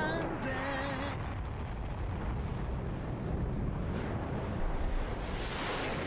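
Music-video soundtrack where the song drops away into a rumbling explosion sound effect. A low rumble with a hiss runs under it, swells near the end and cuts off suddenly.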